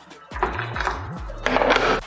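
Background music, with a louder hissing stretch in the last half second.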